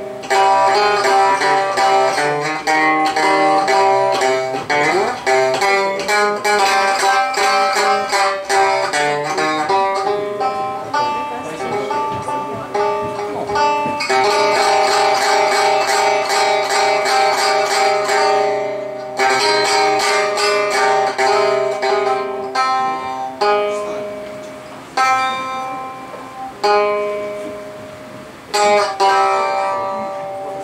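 Minmin, a Japanese plucked string instrument, played live: quick runs of picked notes over ringing sustained tones, with a sliding pitch bend about five seconds in and a few short breaks in the second half.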